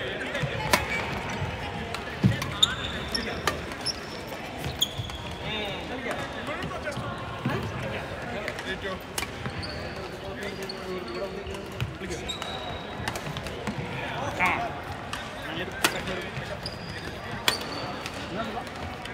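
Badminton rackets striking a shuttlecock: sharp cracks every few seconds during a doubles rally, with short high squeaks from shoes on the wooden court and voices of players around the hall.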